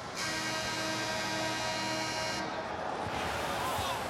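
A held, steady musical chord, with some of its tones pulsing, sounds for about two seconds and cuts off sharply, over the constant noise of an arena crowd.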